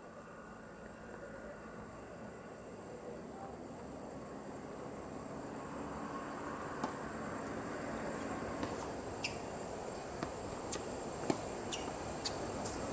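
Tennis racket strikes and ball bounces on a hard court: a serve, then a rally heard as a string of sharp pops at irregular intervals from about seven seconds in, over a steady background hiss.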